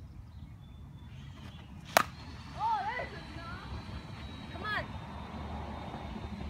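A baseball bat strikes a pitched ball once with a single sharp crack about two seconds in. Short voice exclamations follow, over a low steady outdoor rumble.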